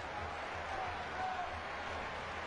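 Steady stadium crowd noise from a football match, an even, unbroken wash of many voices with no single shout or whistle standing out.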